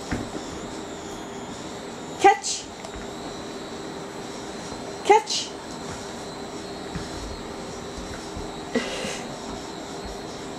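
Speech only: a voice calling "Catch!" three times, about three seconds apart, over a faint steady room hum.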